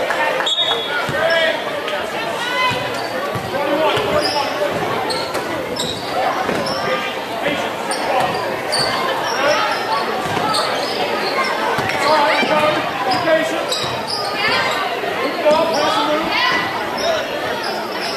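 Basketball game in a gym: a ball dribbled on the hardwood court, with players and spectators shouting and calling out throughout.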